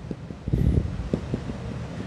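Marker being worked on a whiteboard, heard as low rubbing with several light knocks from about half a second in, with handling noise on the microphone.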